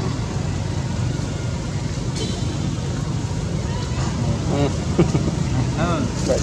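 A steady low rumble, with people's voices coming in during the last second or two.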